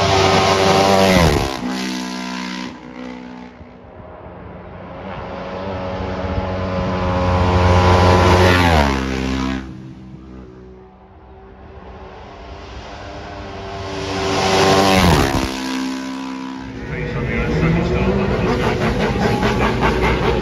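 Race motorcycles passing at full racing speed, three times. Each pass swells to a loud peak and the engine note drops sharply as the bike goes by. Near the end a motorcycle engine runs closer and steadier, with a short rise in revs.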